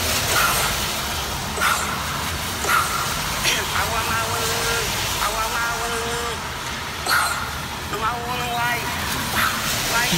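A voice chanting in long held notes, heard through a phone's speaker, over steady traffic noise from a wet street.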